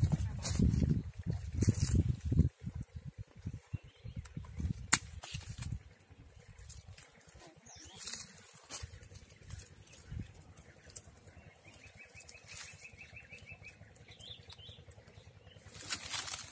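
Footsteps and rustling in dry leaf litter with short crackles, over an irregular low rumble in the first six seconds; after that it goes quieter with a few scattered clicks and a faint high trill a little past the middle.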